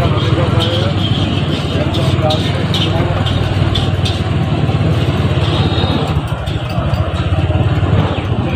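A two-wheeler's engine running steadily at low speed, with voices of people in the busy street around it.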